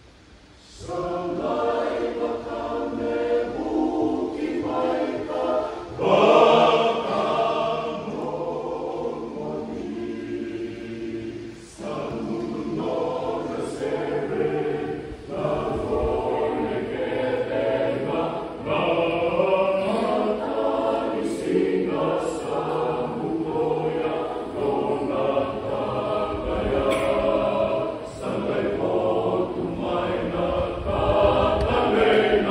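Mixed church choir singing in harmony, with held chords. The singing comes back in after a short break about a second in and swells loudest around six seconds in.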